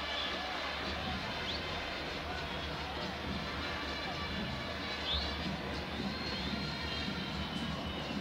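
Low, steady murmur of a large stadium crowd held hushed for a minute's silence.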